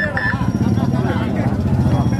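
Two short high beeps, then a steady low engine hum that sets in about half a second in, under crowd voices.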